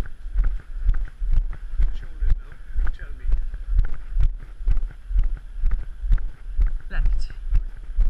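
Walking footsteps on paving stones, about two steps a second, heard as low thuds through a body-worn camera that jolts with each step.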